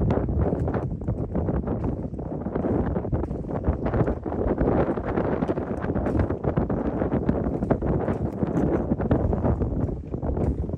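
Wind buffeting the microphone, with footsteps knocking on the wooden boards of a jetty.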